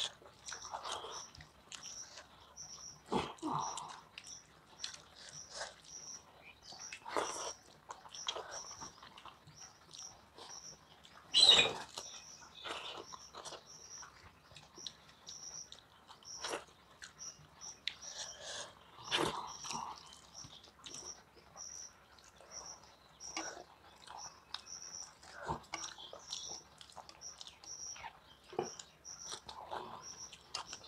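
Close-up chewing and wet mouth sounds of people eating rice mixed with egg curry by hand, with scattered lip smacks and clicks and one sharper, louder click about eleven seconds in. A faint high chirp repeats about twice a second in the background.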